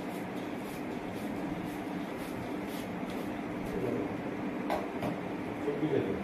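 Steady low hum and room noise, with faint background voices and two brief clicks a little before the end.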